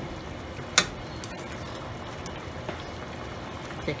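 Curry goat boiling in a stainless steel pan, a steady bubbling with a few faint ticks, and one sharp click of the metal spoon against the pan a little under a second in.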